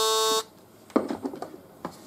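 Panasonic ES-LT20 electric shaver running with a steady buzz, switched off less than half a second in. A few light handling clicks follow.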